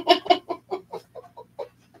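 A person laughing: a quick run of short, rhythmic laughs that grows fainter and dies away about a second and a half in.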